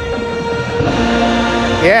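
A marching band with synthesizers holds a loud, sustained chord at the end of its show, and a lower note joins about a second in. A man's voice starts right at the end.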